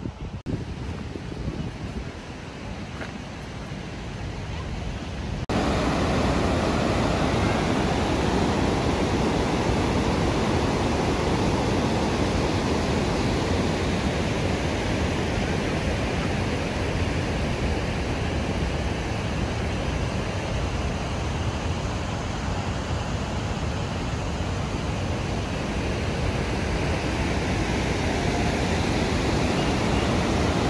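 Steady rushing noise of the Montmorency Falls waterfall. It sets in abruptly about five seconds in, after a quieter stretch of open-air breeze.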